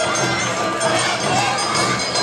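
Awa Odori festival music with the dance troupe's shouted calls over a large, noisy crowd: a dense, continuous mix of many voices and instruments at a steady, loud level.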